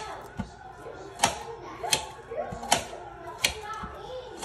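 Kitchen knife chopping onion into small pieces on a metal baking tray: sharp blade strikes, about five, spaced under a second apart.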